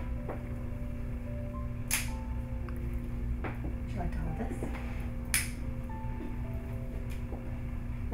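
Two sharp clicks about three and a half seconds apart as the snap clips of a clip-in ponytail hairpiece are opened to take it off. Soft background music plays throughout.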